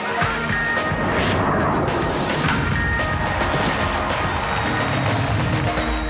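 Dramatic channel-promo music with a run of sharp hits and noisy swells laid over it.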